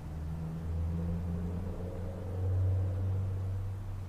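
A low, steady rumble that swells a little past the middle and then eases off.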